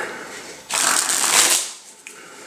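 A deck of playing cards riffled in the hands: one rapid run of cards flicking off the thumb, about a second long, starting a little way in and fading out.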